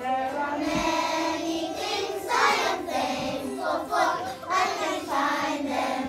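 A group of young children singing together in unison, holding each note for about half a second to a second.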